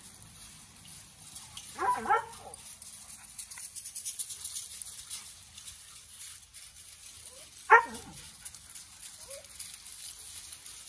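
Dog barking during play: two quick barks about two seconds in, then a single louder, sharper bark near the eight-second mark.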